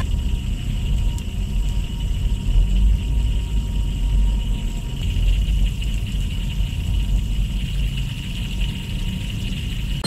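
A steady low rumble with a thin, faint high hiss held over it, strongest in the middle: a plastic disposable butane lighter heat-soaked on a car dashboard, venting gas through the heat-degraded seam between its metal head and plastic body as the pressure inside rises.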